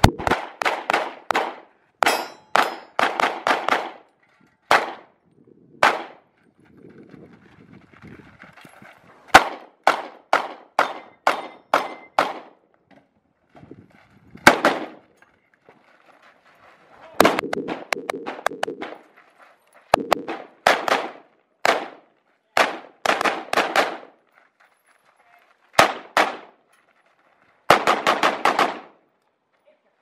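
Gunfire from a handgun and an AR-15-style rifle: quick strings of two to six sharp shots with short pauses between, repeated through the whole stretch.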